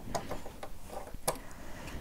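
A few light clicks and taps as a Janome HD9 sewing machine's bobbin case is worked free of its side-loading bobbin compartment, the sharpest click about a second and a quarter in.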